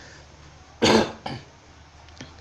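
A man coughing: one sharp cough a little under a second in, then a softer second one just after.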